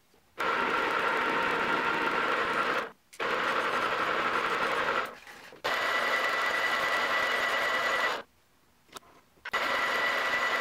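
Metal lathe running with a steady whine, heard in four stretches that start and stop abruptly, the whine sitting higher in the last two. The spinning workpiece is being knurled, then dressed with a hand file held against it.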